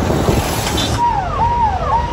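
Car driving in town traffic, with a steady low road and engine noise. From about a second in, a clear tone repeats about twice a second, each one holding briefly and then sliding down in pitch.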